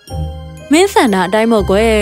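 A short tinkling music cue of bright chime-like notes, followed about two-thirds of a second in by a woman's voice speaking a line over the background music.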